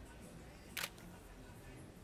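A single camera shutter click just under a second in, against faint room tone.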